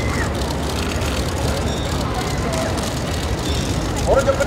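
Steady outdoor street noise, with faint voices murmuring in the background.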